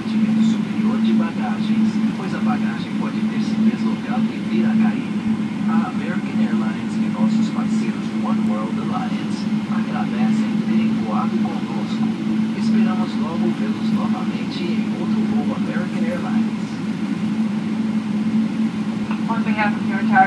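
Steady cabin drone of a Boeing 777-300ER taxiing with its engines at idle, a constant low hum under a wash of noise, with faint voices in the cabin.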